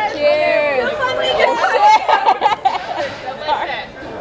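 A group of people chattering and exclaiming over one another, loud and excited, as a toast ends.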